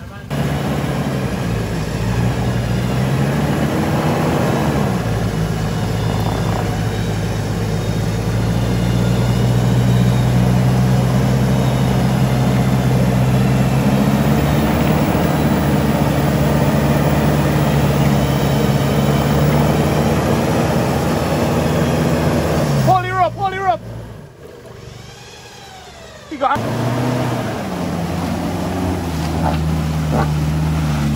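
Toyota Hilux pickup's engine running steadily under load as it crawls up a muddy, rutted slope, its pitch rising briefly a few seconds in. About three quarters of the way through it drops away for a couple of seconds, then the steady engine sound returns.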